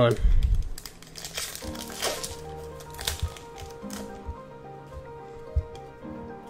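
Foil wrapper of a Magic: The Gathering booster pack crinkling and tearing as it is opened, with a few handling clicks. Soft background music with held notes comes in about a second and a half in.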